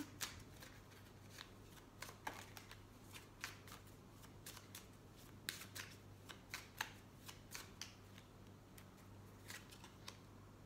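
A deck of tarot cards being shuffled by hand: faint, irregular soft clicks and flicks of the cards.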